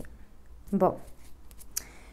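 Oracle cards being handled: a few short, crisp card snaps and slides as cards are drawn from the deck and laid down, the sharpest one near the end.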